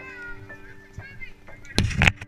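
High, whining vocal squeals over steady background music tones, then near the end a short, loud burst of rushing noise as the swing is released and starts to drop.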